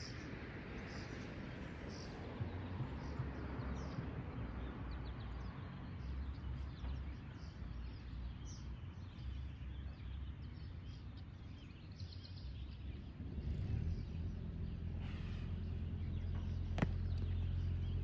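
Outdoor ambience: a steady low rumble that grows louder over the last few seconds, with faint bird chirps scattered through it, and a single sharp click near the end.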